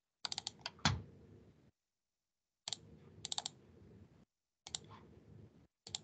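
Faint computer keyboard and mouse clicks in short clusters of a few quick clicks, while a shared screen is restored on a video call. A faint background hiss cuts in and out abruptly with each cluster.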